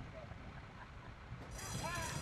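Faint, steady outdoor racetrack background while the horses wait in the starting gate. About a second and a half in, a steady high ringing starts, typical of the starting-gate bell sounding as the gates open for the start.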